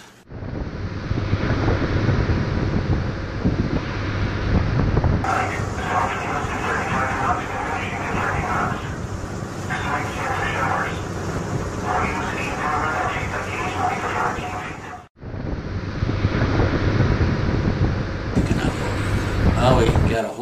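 Gill-net fish tug underway on open water: a steady engine rumble under wind and spray rushing along the hull. Voices come through it twice in the middle, and the sound drops out sharply for a moment about fifteen seconds in.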